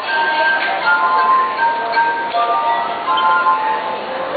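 Glass harp: water-tuned wine glasses played by rubbing fingertips around their rims, ringing in sustained pure tones that change pitch to carry a melody, often two or three notes sounding together.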